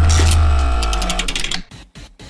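Transition sting sound effect: a deep bass boom with ringing tones and a run of rapid clicks, dying away about a second and a half in.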